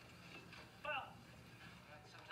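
A person's voice heard faintly: one short utterance about a second in, over quiet room tone.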